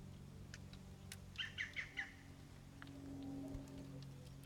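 A bird chirping four times in quick succession, the loudest sound here, over a few faint scattered clicks and a low steady hum.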